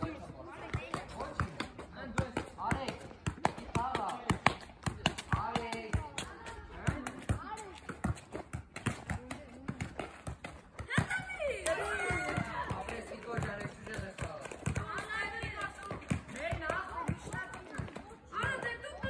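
Several people's voices talking and calling out, with many short sharp knocks throughout.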